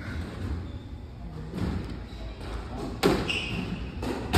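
Squash ball impacts as a rally starts on a glass-walled court, the ball struck by the racket and hitting the walls. A few sharp knocks, the loudest about three seconds in, each ringing on briefly in the large court.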